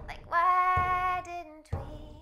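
A woman's voice singing one long held wordless note that steps lower near its end, over a deep hand-struck drum beating about once a second.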